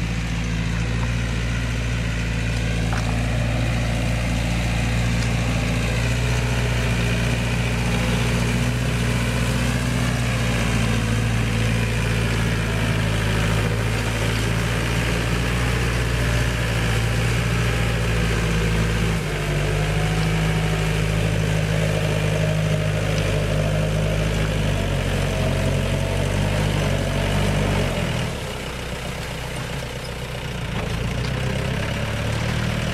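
A farm tractor's diesel engine running steadily under load as it works a flooded, muddy field. Its note changes about two-thirds of the way through, and it becomes quieter near the end.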